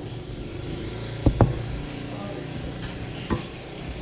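Light knocks on a tabletop, two close together a little after one second and a softer one past the three-second mark, over a steady low hum.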